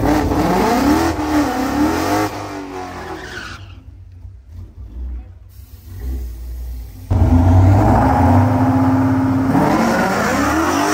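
Drag-race V8 engines at a strip. A car revs hard from the start, its pitch swinging up and down, and then dies away. Later a V8 is held at steady high revs on the line and starts to climb in pitch near the end as the car launches.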